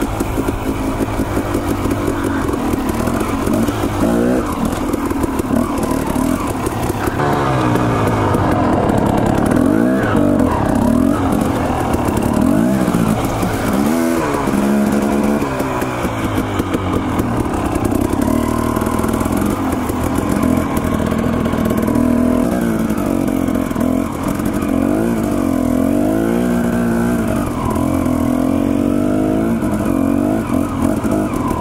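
Dirt bike engine running hard under riding load, its pitch rising and falling every second or two as the throttle is opened and rolled off.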